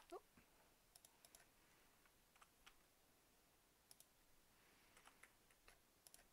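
Faint clicks of typing on a computer keyboard, coming in small groups of two or three as two-digit numbers are entered, with short pauses between them.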